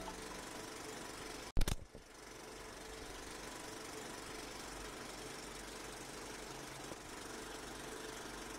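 Sound design under an animated end-card logo: a steady, noisy rumble with a faint hum, broken about one and a half seconds in by a single sharp hit.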